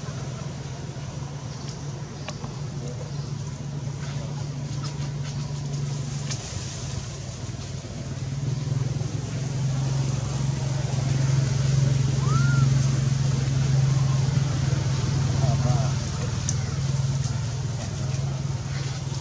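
A low, steady motor drone, like an engine running nearby, growing louder about eight seconds in and easing off near the end, with a single short chirp over it about twelve seconds in.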